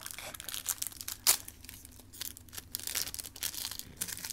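A Panini Adrenalyn XL foil trading-card pack being torn open and crinkled by hand: an irregular run of small sharp crinkles, with one louder crack about a second in.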